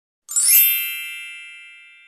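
A bright chime sound effect is struck once about a third of a second in. It rings with many high tones and fades out over about two seconds.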